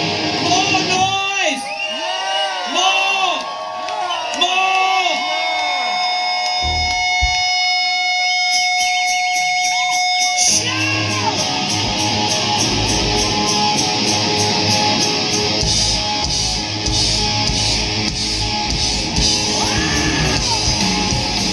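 Live hard rock band starting an encore song: crowd shouts and yells over guitar, a held guitar note ringing from about five seconds in, steady cymbal ticks joining shortly before the full band comes in loud about ten seconds in, with drums and distorted electric guitars.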